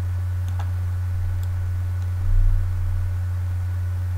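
A steady low hum runs throughout. Over it come a few faint computer mouse clicks, about half a second and one and a half seconds in, and a brief low thump about two and a half seconds in.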